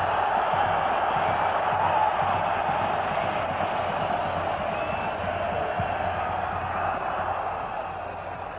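Stadium crowd noise from a large football crowd: a steady, dense din of many voices that eases off over the last few seconds.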